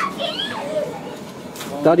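Speech and background chatter of people outdoors, with children's voices among them; a man starts speaking near the end.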